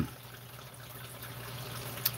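Faint, steady trickle of aquarium water over a low, constant equipment hum, the sound of the tank's filter and pump running.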